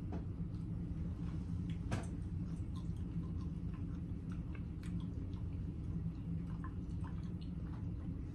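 Close-up chewing of a dense gummy bear: soft wet mouth sounds and small scattered clicks, a sharper click about two seconds in, over a steady low hum.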